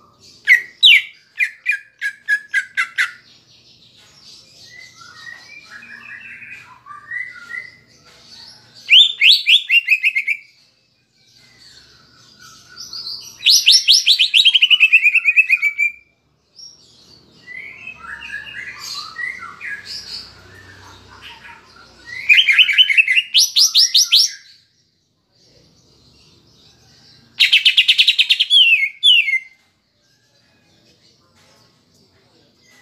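Greater green leafbird (cucak ijo) singing: five loud, rapid trills of notes that slide down in pitch, with softer scratchy twittering between them. The song is filled with mimicked sooty-headed bulbul (kapas tembak) phrases.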